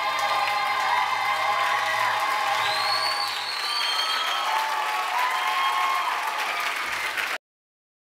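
Audience applause over the cast singing an ensemble finale with music; the sound cuts off abruptly about seven seconds in.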